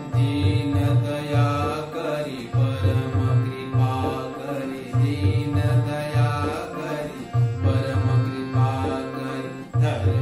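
Harmonium playing a devotional melody over a steady tabla rhythm, with a man singing the bhakti geet along with it.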